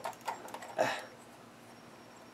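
A few faint small clicks from handling the sway bar disconnect link and pin on an RC rock crawler's front suspension, with a short, slightly louder rustle a little under a second in.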